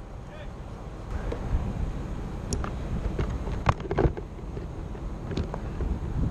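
Wind buffeting a head-mounted camera's microphone as a steady low rumble, with a few sharp clicks and knocks of rope and rigging hardware being handled, the loudest about two thirds of the way in.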